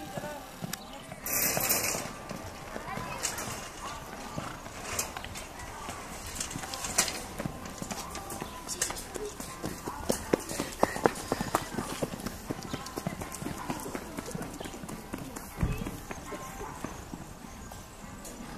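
Hoofbeats of a ridden horse cantering around a show-jumping course on a sand arena, coming as irregular knocks. A brief loud rush of noise comes about a second and a half in.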